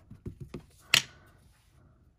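Small hard plastic taps from inking a stamp and setting down a clear acrylic stamp block: a few faint taps, then one sharp click about a second in.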